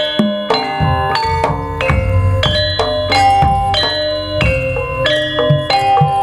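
Javanese gamelan playing tayub dance music: metal keyed instruments struck in a busy run of ringing notes over a low drum pulse.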